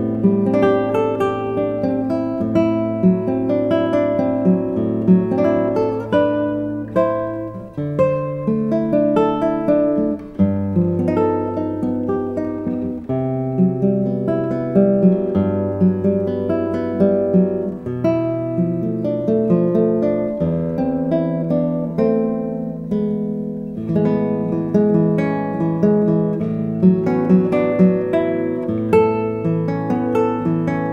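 Solo nylon-string classical guitar, a 2021 Youri Soroka with a spruce top and walnut back and sides, played fingerstyle: a steady flow of plucked arpeggio notes over held bass notes that change every two or three seconds.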